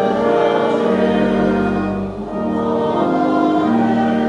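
Church organ playing slow, sustained chords that change every second or so.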